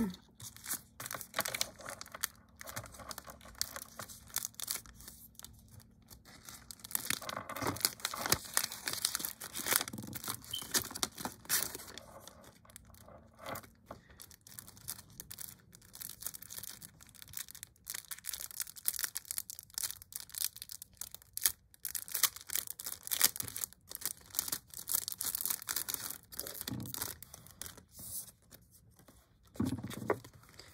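Paper-foil alcohol prep pad sachets and screen-protector kit packaging crinkling and rustling as they are handled, in irregular crackles that are busiest in the middle stretch.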